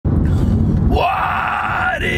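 A man belts a long high note in a mock-singing wail, his voice sliding up into it about a second in and rising to the end, over the low rumble of a car cabin.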